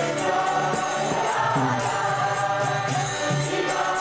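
Group kirtan: many voices chanting together over a harmonium, with a steady beat of small hand cymbals.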